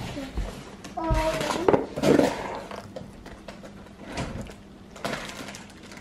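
Cardboard box flaps and a plastic zip-top bag rustling as they are handled, with a few soft knocks scattered through, quieter in the second half.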